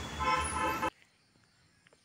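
A vehicle horn sounding one steady tone for just under a second, then the sound cuts off abruptly.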